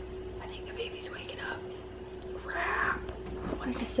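A woman whispering softly, over a steady low hum.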